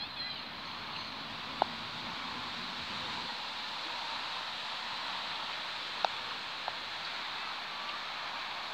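Croquet mallet striking a ball with a sharp clack about a second and a half in, then another clack near the six-second mark followed by a lighter knock. Birds chirp faintly in the background.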